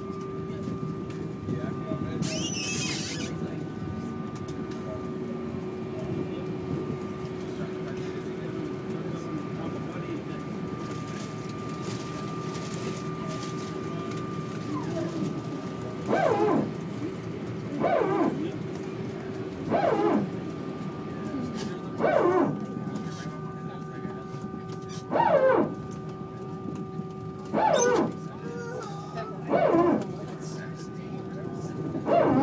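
Jet airliner engines running steadily at low power, heard from inside the cabin as a low hum with several steady whining tones. About halfway through, a short voice-like sound starts repeating every two to three seconds, louder than the engine noise.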